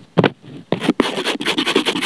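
Scratching and rubbing on a sheet of paper: a short stroke at the start, a brief lull, then a run of rapid scratchy strokes from under a second in, with a sharp tick at about one second.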